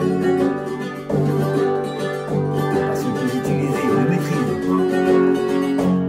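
Solo acoustic guitar playing a flamenco rumba passage in a steady rhythm, moving between chords and single plucked notes.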